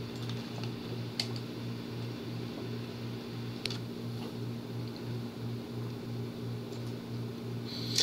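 Room tone: a steady low hum with a slight regular pulse, with two faint clicks, one about a second in and one a little past the middle.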